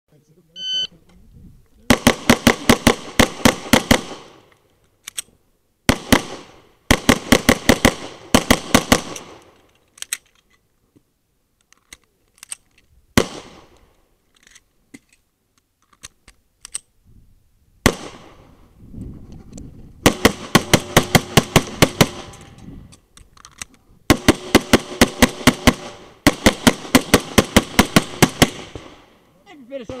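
A shot-timer beep under a second in, then a Tanfoglio Stock III pistol firing fast strings of shots, several a second, in four main bursts. Midway there is a stretch of several seconds with only a few single shots.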